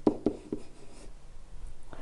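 Stylus writing on a digital pen surface: a few light taps in the first half second, then faint strokes.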